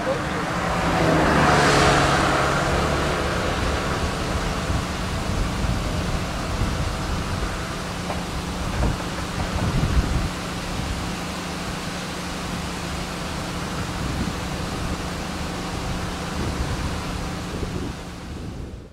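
A motor vehicle passing, loudest about two seconds in, then a steady low engine hum under an even hiss.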